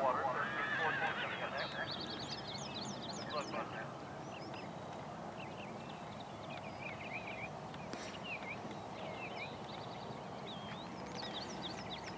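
A horse whinnies once near the start, over birdsong of short high chirps that goes on throughout. A single sharp click comes about eight seconds in.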